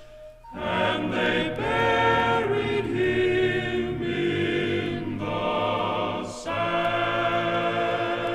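A choir singing long, held notes in chords. It breaks off briefly just after the start and again about six seconds in.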